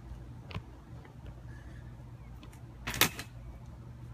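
A steady low hum with a small click about half a second in and a single sharp clack about three seconds in: objects being handled and set down at a metal patio table.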